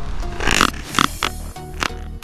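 Electronic dance music with a steady beat, and over it a sudden splash-like burst about half a second in, as of a bass striking a topwater lure at the surface, followed by a short grunt about a second in and a sharp click near the end.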